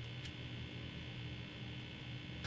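Faint steady hum and hiss, with no distinct event: the background tone of a quiet room recording.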